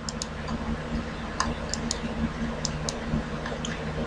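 About ten faint, irregularly spaced clicks of a computer mouse as the view is zoomed in, over a steady low background hum.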